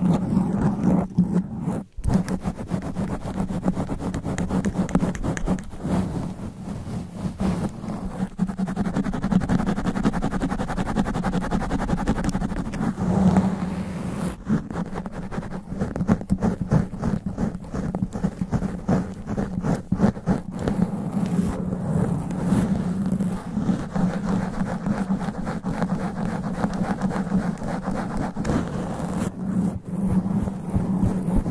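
Long fingernails scratching fast and hard over the sponge foam cover of a condenser microphone, right on the capsule: a dense, continuous rustling scrape with a heavy low rumble. It drops out for an instant about two seconds in.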